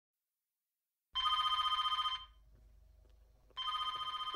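Telephone ringing twice, each ring about a second long with a fast warble, the first starting about a second in and the second near the end.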